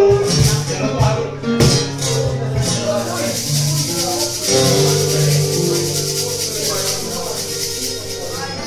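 Live acoustic music from a resonator guitar, an acoustic guitar and a cajón. For about the first three seconds the cajón hits and moving guitar notes carry on, then the percussion drops out and the guitars hold long ringing notes, slowly getting quieter as the song winds down.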